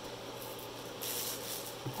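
Clear plastic film over a canvas rustling as a hand slides across it, a soft hiss that grows stronger about a second in.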